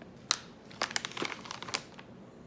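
Plastic snack pouch crinkling as it is handled and put down: one sharp crackle, then a burst of crinkles lasting about a second.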